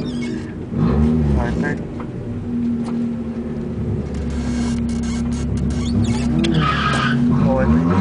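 Car engine heard from inside the cabin, running steadily, with short rises and falls in revs about a second in and twice near the end.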